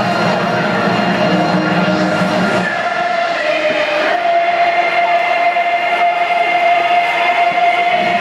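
Stadium PA audio of a game-opening video, music over a large crowd. About three seconds in, one long steady note takes over and is held to the end.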